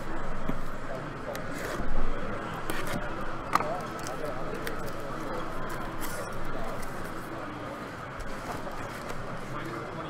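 A sealed cardboard shipping case of hockey card boxes being handled and opened: scraping and rustling cardboard with several sharp clicks and knocks, the loudest about two seconds in. Near the end the sealed boxes are slid out of it, over a background murmur of voices.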